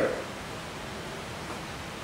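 A pause in a man's speech: steady, even room noise and hiss, with the tail of his last word at the very start.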